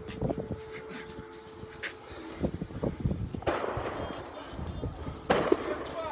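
Gunfire: several sharp single cracks, then two louder, longer bursts about three and a half and five and a half seconds in.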